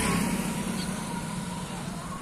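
Road traffic: a passing vehicle's engine hum fading as it moves away, over a steady background rush.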